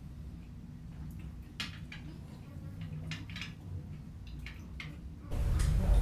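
Quiet room with a steady low hum and a few faint small clicks and sips as beer is tasted from small glasses. A louder low rumble starts near the end.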